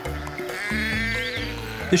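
A sheep bleats once, a long wavering call about a second in, over background music.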